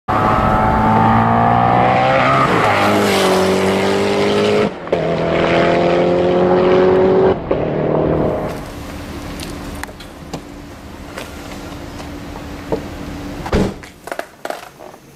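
Koenigsegg Agera RS's twin-turbo V8 accelerating hard, its loud engine note climbing in pitch, dropping as it shifts up about two and a half seconds in, then climbing again. In the second half the engine sound is quieter and steadier, with a brief knock near the end.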